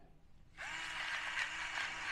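AmUseWit battery-powered gravity pepper grinder switching on as it is tipped over, its small motor whirring steadily with a crackle of peppercorns being ground on a coarser setting. It starts suddenly about half a second in.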